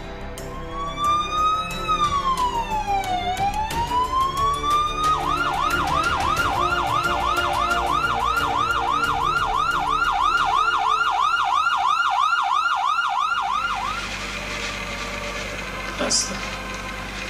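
Emergency-vehicle siren, first a slow wail that rises and falls, then switching about five seconds in to a fast yelp that sweeps about four times a second, cutting out near the end. Music plays underneath.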